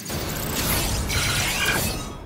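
Sci-fi interface sound effect for an animated character-profile card: a dense mechanical whirring and fine clicking like ratchets and gears, with a few short electronic tones in the second half, easing off near the end.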